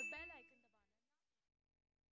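A single short ding from a notification-bell sound effect, with a fading voice under it. The ding dies away within about a second, then near silence.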